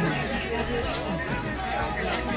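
Several people talking at once in indistinct chatter, with music playing in the background.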